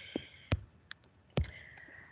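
Computer mouse clicking: about four short, sharp clicks, two of them louder and about a second apart.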